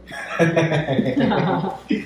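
A person chuckling: a run of short, voiced laughing sounds starting about half a second in and lasting a bit over a second.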